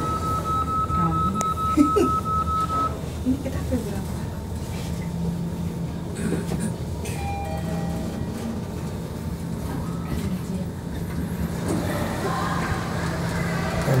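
Mitsubishi elevator car running upward between parking floors with a steady low hum. A steady high tone stops about three seconds in. Near the end, background music and voices come in.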